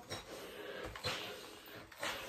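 Faint hiss and rustle of a steam iron pressed and slid along a folded knit neckband, with a soft knock about a second in.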